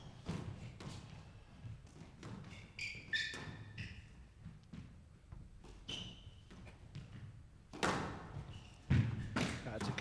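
Squash rally: the ball knocked back and forth by rackets and off the court walls in a string of sharp knocks, with brief squeaks of players' shoes on the court floor. The loudest strikes come near the end.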